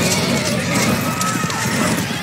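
Hoofbeats of many horses ridden fast over a dirt track, a dense run of pounding strokes, with music playing underneath.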